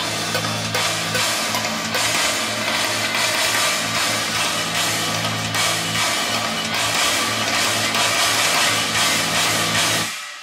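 Playback of a programmed heavy metal demo: a sampled drum kit with heavy guitar hits that follow the drum pattern, dense and chaotic. It starts abruptly and cuts off at the end.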